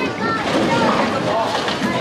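Indistinct voices over the steady din of a busy bowling alley hall, with a low rumbling background.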